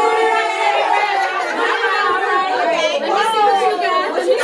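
Excited chatter of several women's voices talking and calling out over one another, with a few drawn-out, gliding calls.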